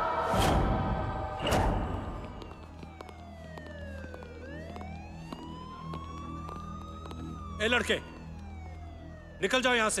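Dramatic film-score music with two sharp hits, giving way to a siren wailing in long slow sweeps: its pitch slides down, climbs slowly, then falls again, over a steady low hum. A man's voice speaks briefly twice near the end.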